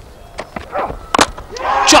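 A cricket ball chopped off the bat onto the stumps: a few short, sharp knocks, the loudest pair a little over a second in, as the wicket falls. The crowd noise swells into a cheer near the end.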